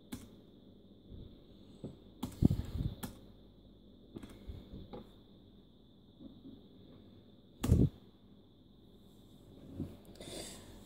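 A few sharp clicks of the laptop's pointer buttons as install dialog boxes are confirmed, the loudest about three-quarters of the way through, over a faint steady high-pitched tone.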